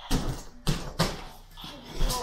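Child's feet bouncing on an inflatable air-track tumbling mat: three hollow thuds in the first second, then quieter.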